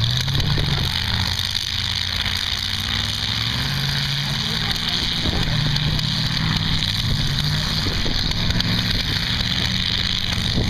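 Demolition derby cars' engines running and revving, several at once, their pitch rising and falling as the cars manoeuvre.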